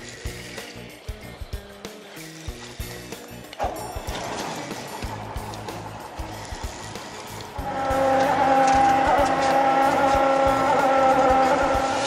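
Small fishing boat's outboard motor getting under way. A rush of motor and water noise builds about a third of the way in, then a loud, steady engine note with a high whine comes in about two-thirds of the way through as the boat runs at speed. Background music plays underneath.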